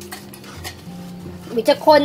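Metal spoon stirring and scraping a thick sauce around a stainless steel pan, with a couple of short clinks in the first second.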